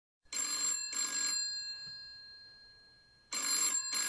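Telephone bell ringing in double rings: two short rings about half a second apart, the bell fading out for a couple of seconds, then the next pair of rings starting near the end.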